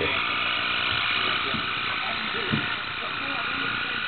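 Small electric motor and gearing of a radio-controlled Pinky Q Messerschmitt KR200 toy car running, a steady high-pitched whine that starts abruptly as the car drives off.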